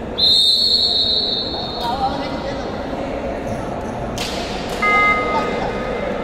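A referee's whistle blown in one long, steady, high blast just after the start, then a shorter, lower-pitched tone about five seconds in, over the murmur of voices in a sports hall.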